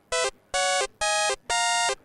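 Eurorack modular synthesizer voice sequenced by a Rebel Technology Tonic, playing four bright, buzzy notes: one short blip, then three held notes of about a third of a second each, stepping upward in pitch. The notes come from trigger-driven intervals that add together, so the pitch shifts with each trigger.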